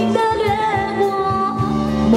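A woman singing a Mandarin pop ballad live into a handheld microphone, held notes bending in pitch, over an amplified live band with drum kit.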